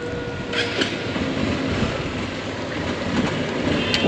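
Single-cylinder Honda motorcycle engine running at low speed as the bike rolls slowly off, heard as a steady rumble through a helmet-mounted camera. A short sharp click comes near the end.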